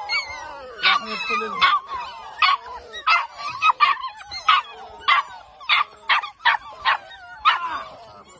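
A litter of Belgian Malinois puppies yapping excitedly, short high yips about twice a second with whines wavering between them.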